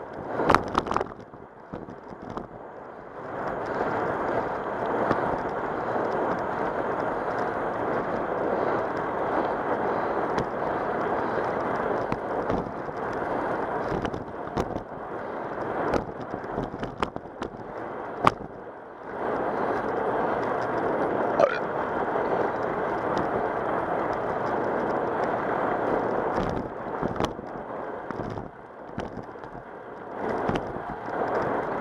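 Bicycle ride on cracked asphalt heard from a bike-mounted camera: a steady rush of wind on the microphone and tyre noise, with scattered sharp clicks and knocks from the bike. It eases off briefly a few times.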